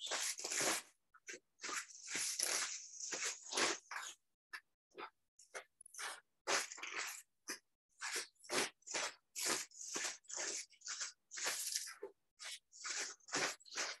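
A person exercising, turning in place barefoot with arms swinging: a run of short, irregular hissy scuffs and breaths, about two a second, each cut off sharply.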